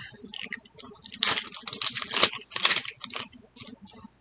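Plastic wrapping on a Mini Brands surprise ball crinkling and tearing as it is picked and peeled off by hand, in quick irregular crackles that are loudest in the middle.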